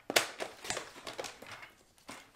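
Paper trimmer's sliding blade cutting a strip of patterned paper: a sharp click at the start, then a run of fainter scratchy clicks that fade out.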